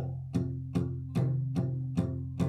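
Steel-string acoustic guitar played palm-muted, the picking hand resting lightly on the strings by the bridge: about five even, damped plucks of low notes, roughly two or three a second, giving a tense, held-back sound.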